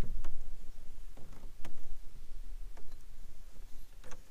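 Spinning fishing reel giving a few sharp, irregular clicks as a hooked spotted bass is reeled in, over a steady low rumble.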